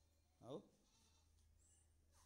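A single short spoken call, 'aao' ('come'), with falling pitch about half a second in, over a faint steady low hum.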